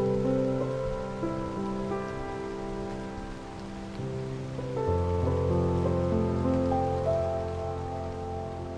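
Calm, slow improvised piano on a sampled grand piano (Spitfire LABS Autograph Grand) played from a digital keyboard: soft sustained chords over a steady rain ambience. A deep bass note comes in about five seconds in.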